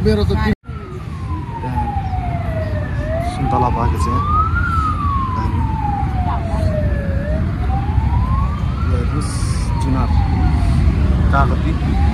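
A siren wailing, its pitch sliding slowly down and back up about every four seconds, over a steady low rumble. The sound cuts out completely for a moment about half a second in.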